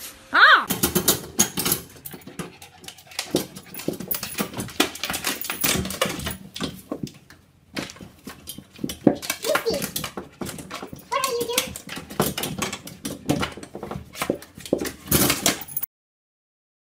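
Siberian huskies whining and yowling in short pitched calls, with a rising call about half a second in, over frequent knocks and clatter.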